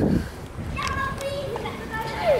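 Children's voices: a short call or babble about a second in, over a steady murmur of background noise.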